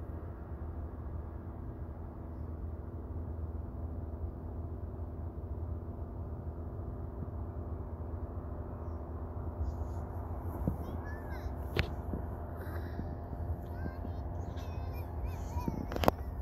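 Fresh Breeze Monster 122 paramotor's two-stroke engine droning steadily at a constant pitch as it flies. In the second half a small child's short squeals and babble come in over it.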